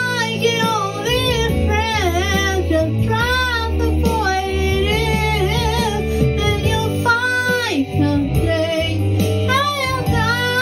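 A woman singing a slow pop ballad into a microphone over an instrumental backing track, her held notes wavering with vibrato and bending through runs, with a long downward slide about three-quarters of the way through.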